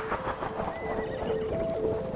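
Background electronic music: a synth melody stepping between a few notes over a fast, clicking percussion beat.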